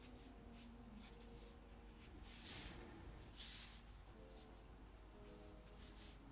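Marker nib stroking across drawing paper, faint, with two short scratchy strokes about two and three and a half seconds in.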